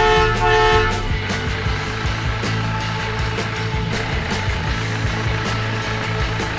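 A horn-like toot, held for about a second at the start, over steady background music with a low drone underneath.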